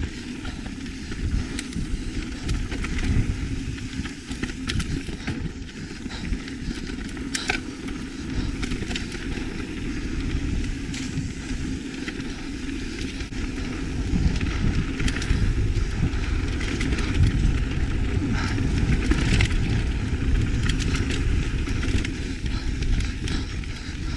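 Lapierre mountain bike riding a dirt singletrack: a continuous rumble of tyres on the trail and wind on the camera microphone, with scattered short clicks and knocks from the bike. The rumble grows louder a little past the middle.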